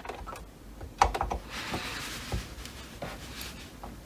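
Small clicks and a faint scrape of flat pliers and a tensioned steel spring as the spring is worked off its hook on a Cricut Maker's roller assembly, with the sharpest click about a second in.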